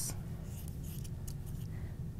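Scissors cutting through T-shirt fabric: a few faint, short snips over a low steady hum.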